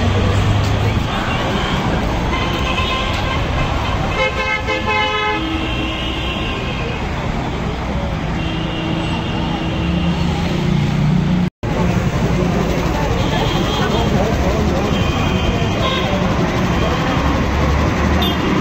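Busy city street traffic: steady road noise with car horns honking several times, the clearest about four seconds in, and people's voices close by.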